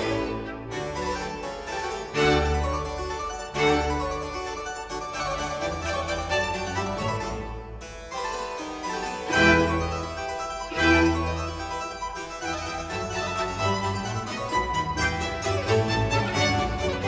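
Harpsichord playing a fast, busy solo line in a Presto movement, accompanied by baroque string ensemble and continuo, with a few heavier low accents from the accompaniment.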